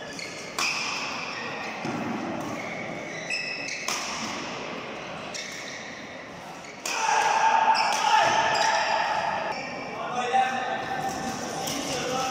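Doubles badminton rally in a large echoing hall: sharp racket strikes on the shuttlecock every second or two, with short squeaks from shoes on the court mat. It gets louder from about seven seconds in.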